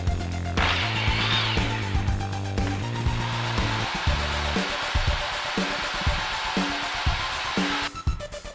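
Black & Decker electric drill running for about seven seconds, starting about half a second in, while boring through a plastic Easter egg. Background music with a steady beat plays underneath.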